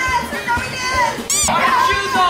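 Excited shouting voices in a scuffle, with a short high-pitched shriek about a second and a half in, over background music with a steady beat.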